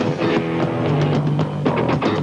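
A funk-rock band playing live without vocals: a drum kit hitting a steady beat under electric guitar and a low bass line, with one low note held through the middle.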